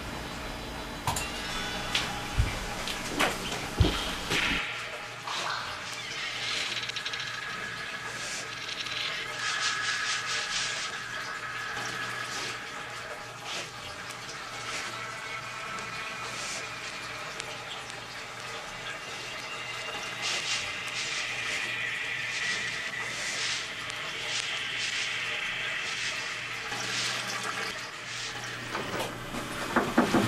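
A few clicks and knocks in the first seconds, then water running and gurgling steadily over a low hum.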